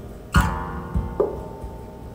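Acoustic guitar strummed in an instrumental passage of a live song: two loud chord strokes, about a third of a second in and just after a second in, each left ringing.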